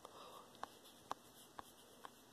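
Near silence, with faint sharp ticks about twice a second.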